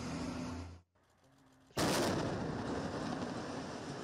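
A military vehicle engine runs steadily until it is cut off abruptly. About two seconds in, a single loud explosion goes off as a house is blown up with demolition charges, followed by a long fading rumble.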